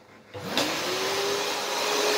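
Vacuum cleaner switched on: after a brief near-quiet, the motor starts with a short rising whine that levels off into a steady hum with rushing air.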